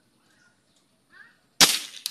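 A PCP air rifle converted from CO2 fires a single shot, a sharp crack about a second and a half in. About half a second later comes a fainter smack, the pellet striking the can target.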